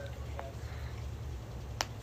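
Quiet room with a low steady hum, a faint tick about half a second in and one sharp click near the end.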